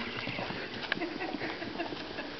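Puppies scampering, making a quick, irregular run of small taps and clicks with their paws.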